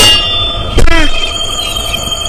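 Cartoon sound effects: a sharp metallic clang with a lingering ringing tone at the start, then just under a second later a short pitched sound that falls in pitch.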